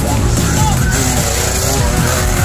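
A dirt bike's engine running as the bike rides past, heard over background music and voices.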